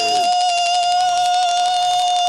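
Beaker's long, high-pitched wail held steady on one note.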